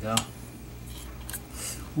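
A thin metal pick clicks and scrapes lightly against an amplifier circuit board while working at a stuck part, over a steady low hum.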